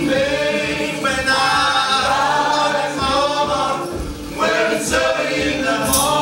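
A mixed group of male and female voices singing a Caribbean spiritual together in harmony, live, with a steady low beat keeping time underneath.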